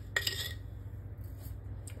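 A single light clink with a brief ring, a glass sugar jar knocking against a stainless steel blender beaker, just after the start.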